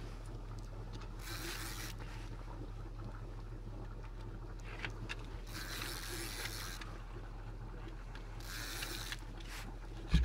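Three bursts of scraping hiss, about a second each, over a steady low hum.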